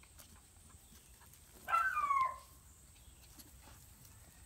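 A beagle puppy gives one short, high-pitched cry that falls in pitch, about halfway through.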